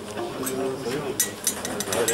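Several people talking in a room, with a run of light, sharp clinks starting about a second in.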